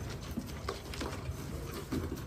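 Faint rustling and a few light taps as a hand reaches into a cardboard box of caught pigeons, with the birds shifting inside it.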